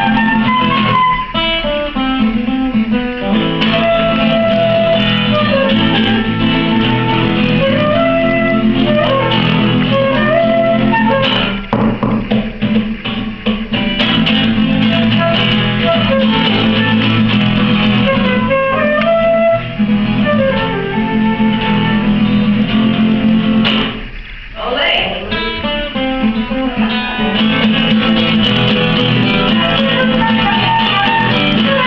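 Live instrumental duet: an acoustic guitar strummed as accompaniment while a flute plays the melody line above it. Both break off briefly about three-quarters of the way through, then carry on.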